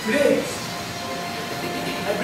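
A brief voiced call from a man near the start, over a steady background hum.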